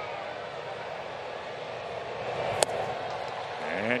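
Steady ballpark crowd noise, with a single sharp pop about two and a half seconds in: a pitch smacking into the catcher's mitt on a swinging strikeout.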